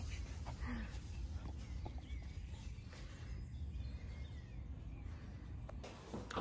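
Quiet outdoor ambience: a low rumble of wind on the microphone with faint bird calls.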